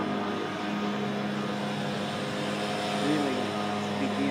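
Steady hum of city street traffic, with faint voices briefly about three seconds in.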